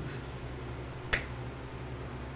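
A single sharp click about a second in, over a steady low hum.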